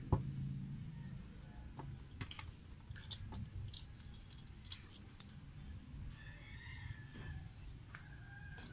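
Faint, scattered clicks and scrapes of a motorcycle engine's oil filler cap with dipstick being unscrewed and drawn out of the crankcase.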